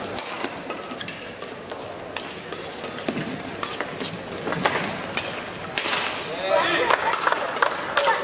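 Badminton rally: sharp cracks of rackets striking the shuttlecock, with players' footwork on the court. Voices from the stands grow louder near the end as the rally finishes.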